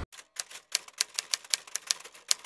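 Typewriter sound effect: a rapid, uneven run of sharp key strikes, several a second, as a caption is typed out on screen.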